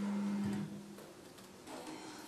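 A steady low hum with overtones cuts off about half a second in, leaving quiet room noise with a few faint clicks.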